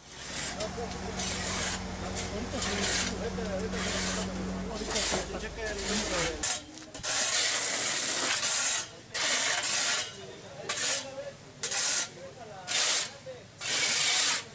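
Metal shovels scraping across asphalt in repeated short strokes, about one or two a second, clearing dirt and crash debris from the road. A low engine hum runs under the first half and is gone about six seconds in.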